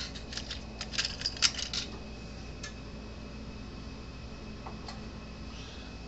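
Small electronic parts clicking and rattling against each other for about two seconds as spare capacitors are picked through. Then a couple of single clicks follow, over a faint steady hum.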